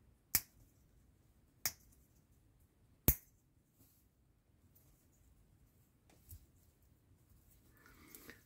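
Plastic halves of a scale-model brake disc clicking together as they are pressed onto their locating pins: three sharp clicks in the first few seconds, the third the loudest, then a faint one later.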